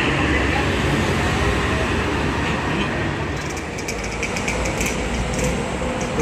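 Steady roadside traffic noise: a coach bus's engine and tyres fading as it drives off along the road, with other vehicles moving, dipping slightly in the middle.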